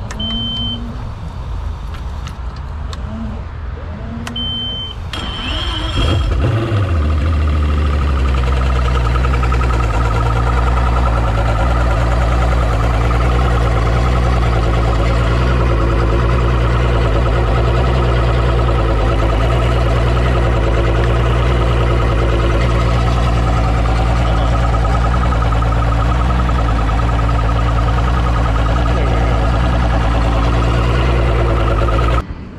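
Two short high beeps, then about five seconds in a Mercury Optimax V6 two-stroke outboard starts, out of the water on a flushing hose; its pitch settles within a couple of seconds into a steady idle that runs on evenly.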